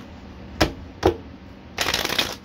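Tarot cards being handled: two sharp taps of the deck about half a second apart, then a riffle shuffle near the end, a quick rattling run of cards falling together.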